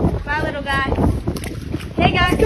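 Wind buffeting the microphone in a steady rumble, with a high, excited voice calling out briefly about half a second in.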